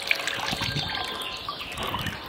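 Water trickling and dripping off a shoe as it is lifted out of a plastic tub of water, with small splashes.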